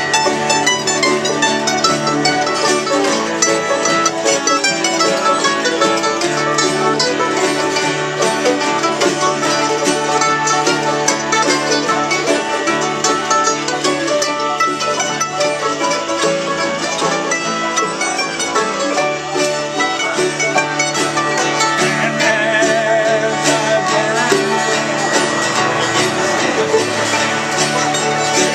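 Acoustic bluegrass jam: mandolins and acoustic guitars picking together with a fiddle, playing steadily without a break.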